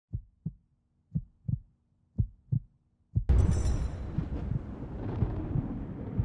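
Show-intro sound effect: a heartbeat-like double thump about once a second, three times, then a sudden boom with a brief high shimmer that trails off into a low rumbling wash.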